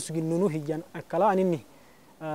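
A man speaking in short phrases with long held vowels, then pausing about a second and a half in.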